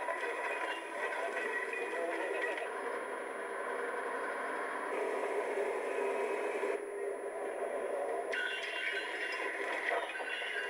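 Muffled, thin-sounding noise of cable logging machinery with scraping and rattling. Its character changes abruptly several times.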